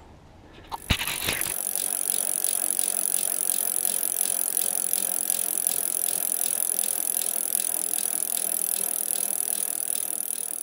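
A click about a second in, then a bicycle's freewheel spinning with a steady, even buzz.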